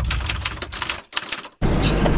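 A rapid run of sharp clicks, an edited-in transition effect over a black screen, thinning out and fading about a second and a half in. Steady low car-cabin rumble takes over near the end.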